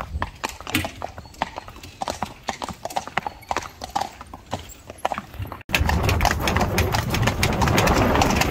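Hooves of a pair of Friesian horses clip-clopping on brick paving as they pull a carriage, two or three strikes a second. About two-thirds of the way through, the sound cuts suddenly to a louder, steady noise with quicker, denser hoofbeats on the road.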